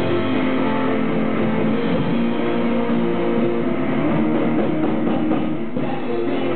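A live rock band playing an instrumental passage: electric guitars strumming chords over bass guitar and drums.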